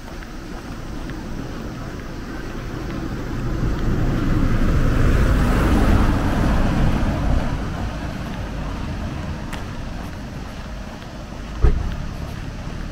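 Outdoor street ambience: a rushing noise swells over a few seconds, peaks around the middle and fades away, with one short thump near the end.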